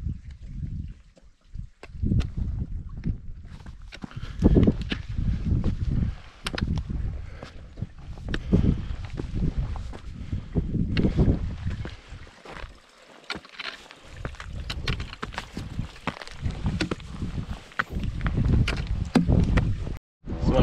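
Irregular gusts of wind rumbling on the microphone, with crunching footsteps on gravel and snow.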